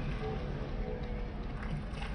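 Steady low rumble of harbour background noise, with no distinct event.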